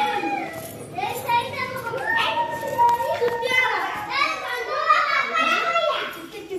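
Children's voices, talking and calling out.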